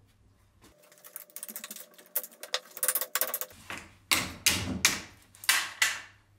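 Quick light metal clicks and rattles, then several louder sharp metal knocks near the end, as the end cover of an old electric motor is worked loose with a hand tool during disassembly.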